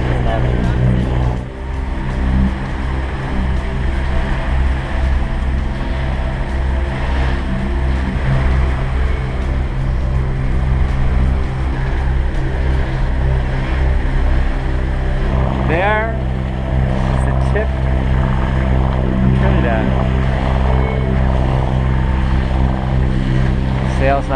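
A sailing catamaran's diesel engine motoring at cruising speed: a steady low drone that holds an even pitch throughout. About two-thirds of the way in, a brief rising whistle-like glide sounds over it.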